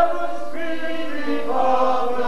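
Operetta voices singing a slow passage of long held notes, changing pitch about once a second, in a theatre.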